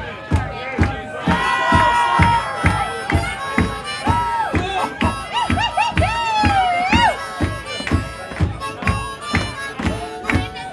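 Live harmonica solo in a blues song, the harmonica bending its notes up and down over acoustic guitar strummed in a steady beat of about four strokes a second.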